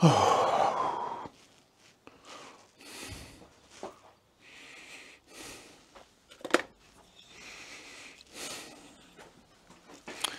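A man's loud sigh close to a clip-on microphone, falling in pitch, then quieter breathing and a few handling clicks as a cordless drill is picked up from the bench, the sharpest click about six and a half seconds in.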